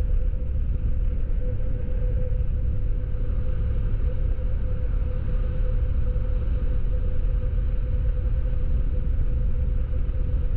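Motorcycle riding along at a steady speed: a steady engine drone under a heavy low rumble, heard from the handlebar camera.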